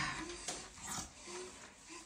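A baby whimpering in short, faint fussy sounds while being washed in the bath.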